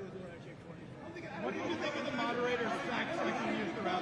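Indistinct chatter of many overlapping voices in a large, crowded hall, growing louder about a second in.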